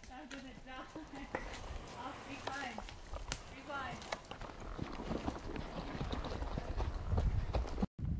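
Horses' hooves clip-clopping irregularly on a dirt forest trail as several horses walk past, with faint voices under the steps.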